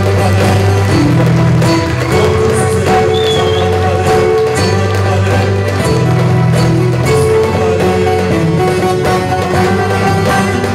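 A live Turkish folk ensemble of bağlama, violin, keyboard and drum kit playing an instrumental passage, loud and steady, with long held low notes that change every second or so.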